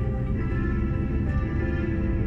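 Classical music from a car radio, with long held notes, over the low rumble of the car on the road.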